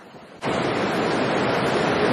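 A steady, even rushing noise that starts abruptly about half a second in and holds its level.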